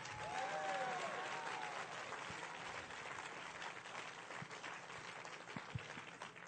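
Audience clapping, a dense patter that is strongest at first and slowly dies away.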